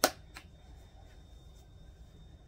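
A sharp click at the very start and a lighter click about half a second later as plastic-capped spice jars are handled, then only faint room noise.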